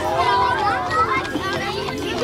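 A group of young children shouting and screaming excitedly together, many high voices overlapping.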